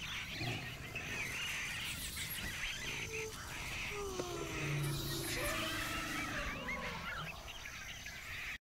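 Indistinct babble of distant voices and calls over a steady background hiss, with short wavering, gliding pitched sounds throughout.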